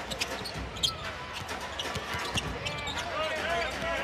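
Basketball dribbled on a hardwood court, a run of short bounces, over the background sound of the arena.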